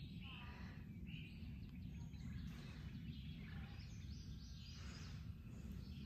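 Faint outdoor ambience: a few scattered bird chirps over a steady low rumble.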